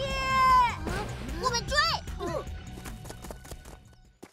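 A cartoon child's long crying wail that sags at its end, then a few short gliding vocal cries, over background music that fades away near the end.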